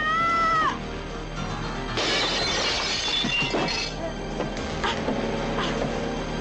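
Action film soundtrack: a high-pitched cry in the first moment, then a shattering crash lasting about two seconds, over background music.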